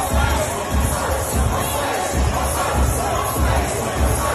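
Loud party music with a steady, heavy bass beat, over the noise of a crowd cheering and shouting.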